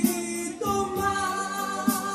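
A man singing a Spanish ballad into a microphone over a recorded karaoke backing track, holding a long note, with percussion strikes at the start and near the end.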